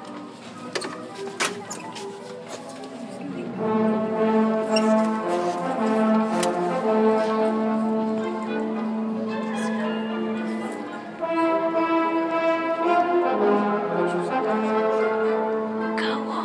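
Concert band playing brass-led chords in a large arena. Murmuring audience chatter comes first, then the band comes in loudly about three and a half seconds in. The band drops back briefly around eleven seconds and then swells again.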